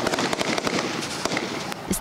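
Rapid gunfire from several firearms on a shooting range, many shots in quick succession overlapping one another.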